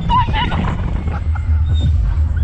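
Wind rushing over the on-ride camera microphone as the Slingshot capsule swings through the air, a steady heavy rumble, with the riders' short wavering squeals and laughs in the first half second.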